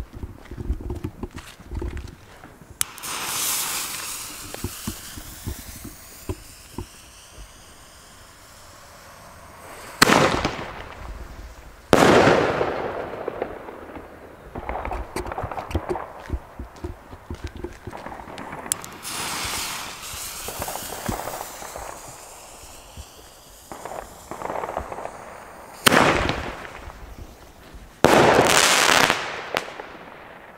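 30 mm single-shot firework shells (Bombenrohre) going off. Several sharp, loud bangs, the strongest about ten and twelve seconds in and again near the end, each followed by a long echoing tail. Quieter noisy stretches come between the bangs.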